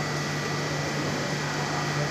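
Offset printing machine running: a steady hum with a low drone and a thin high whine.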